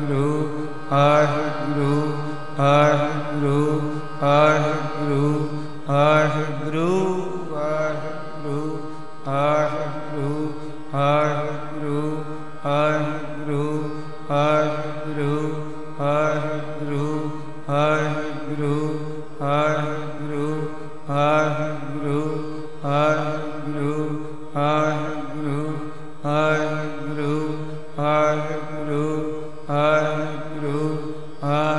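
Sikh kirtan: a short devotional phrase chanted over and over, returning about every second and a half or so, over a steady sustained drone.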